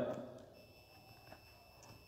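Near silence in a pause between sentences: the end of a man's speech fades out in the first half second, leaving only a faint, steady, high-pitched electronic whine.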